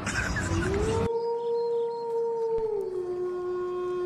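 A rushing noise that cuts off about a second in, under a long eerie howl that rises, holds one pitch, then drops slightly near three seconds and carries on. It is a spooky sound effect heralding a ghost.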